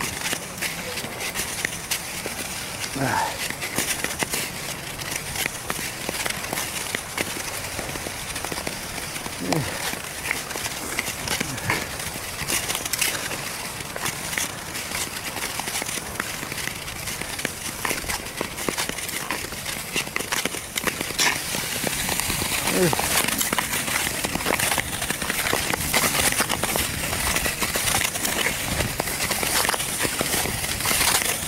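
Nordic skate blades scraping and gliding over ice in steady strides: a gritty scratching with clicks at each push, louder in the last third.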